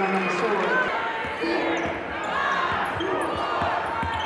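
Indoor basketball arena crowd noise with the thumps of a basketball being dribbled on the hardwood court, the bouncing more frequent in the second half.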